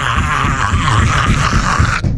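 A man's long, raspy, strained groan, held without a break and cut off suddenly at the end.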